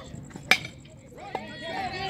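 A youth baseball bat hitting the pitched ball about half a second in: one sharp, loud crack with a short metallic ring. Spectators shout in response.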